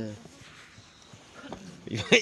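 Men's voices: a drawn-out vocal sound that ends just after the start, a quiet lull, then voices starting again near the end.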